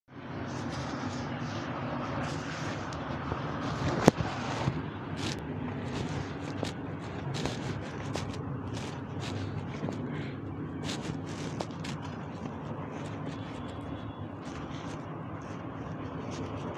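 A steady low rumble with scattered clicks and knocks, one sharp knock about four seconds in being the loudest.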